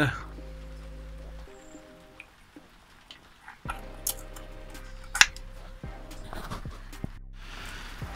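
Light metallic clicks and taps in the second half, one much sharper than the rest about five seconds in, as valve bucket tappets are set back into their bores in a Toyota 1UZ V8 cylinder head.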